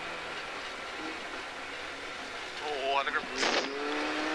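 Rally car engine running, heard inside the cabin, with a steady note as the car runs along a snow-covered stage. About three seconds in, the revs rise sharply and there is a brief loud burst of noise as the car slows for a bend.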